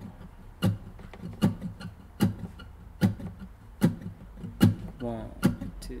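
Sparse acoustic guitar intro on a slow, steady beat, with a sharp percussive hit about every 0.8 seconds and low notes ringing between the hits.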